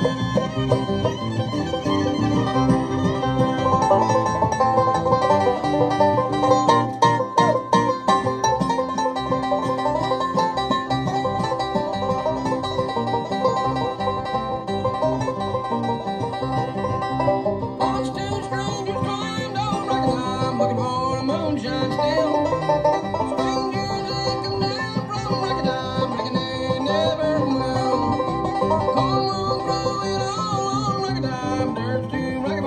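Live bluegrass band playing an instrumental passage without singing: banjo rolls leading over acoustic guitar and bass. The texture changes about eighteen seconds in.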